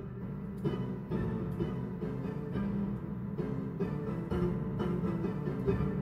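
Digital piano played from sheet music: a continuous run of notes and chords, mostly in the low and middle range.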